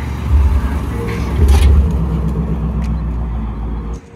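Classic lowrider car, a 1960s Chevrolet Impala, driving past with a deep engine rumble that swells about a second and a half in.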